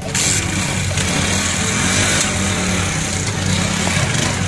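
Small motorcycle engine running steadily, starting abruptly at the beginning with a loud hiss over a low steady drone.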